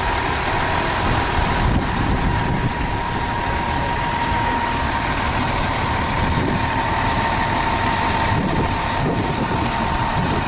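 Concrete mixer truck's diesel engine running steadily as the drum turns to discharge concrete down the chute, with a steady whining tone over the engine noise.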